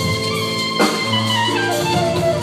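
Live jazz band playing: a horn holds long, shifting melody notes over double bass, drums and percussion, with a sharp drum hit a little before the middle.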